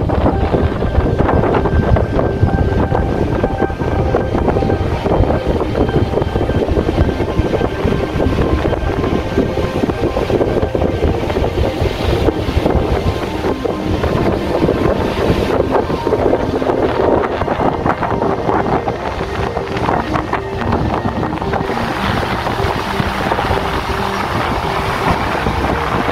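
Wind buffeting the camera's microphone, a loud, ragged, low rumble that cuts in abruptly and holds throughout, with music faintly underneath.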